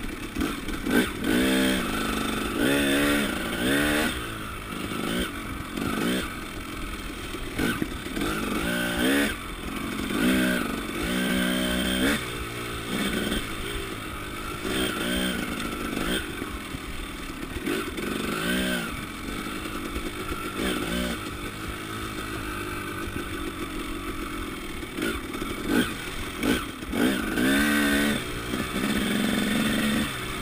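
KTM 300 EXC two-stroke single-cylinder enduro engine being ridden off-road, revving up in short repeated bursts as the throttle is opened and closed, its pitch rising with each burst and dropping back between.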